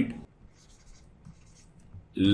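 Stylus writing on a digital tablet: faint scratching with a few light taps.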